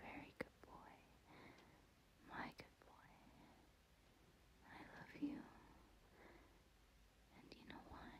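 A woman whispering softly and breathily, too faint to make out the words, in short phrases every second or two, with a couple of sharp clicks.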